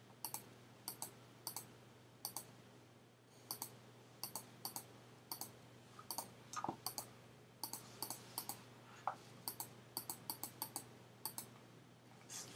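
Quiet, repeated clicks of a computer mouse button as brush dabs are stamped onto a canvas, coming in irregular runs of about two to three a second with a short pause about three seconds in. A faint steady hum lies underneath.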